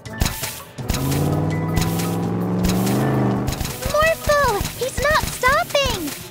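Cartoon soundtrack: a steady low drone with rapid clicking for a couple of seconds, followed by a run of squeaky, up-and-down cartoon character vocalizations.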